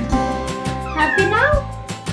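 A cat meowing, with one wavering meow that rises and falls about a second in, over background music with a steady beat.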